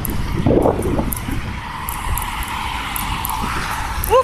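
Road traffic: a passing vehicle's tyre and engine noise that swells over a couple of seconds and then fades, over a steady low rumble.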